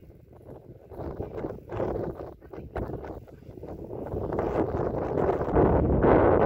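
Wind buffeting the microphone in gusts, getting louder through the second half.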